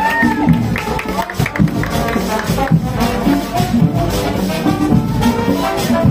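Marching band playing: brass (trumpets and trombones) over drums and rhythmic percussion.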